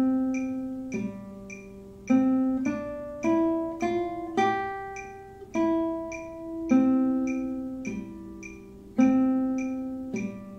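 Classical guitar playing a slow single-note melody in 4/4 (C, G, then eighth notes C-D-E-F up to G, back down E, C, G, and C again), each plucked note ringing on into the next. Over it a metronome clicks steadily about twice a second.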